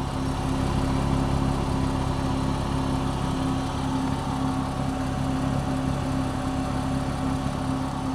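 Nissan Z Proto's twin-turbo V6 idling steadily, heard up close at the exhaust tip: an even, low engine tone with no revving.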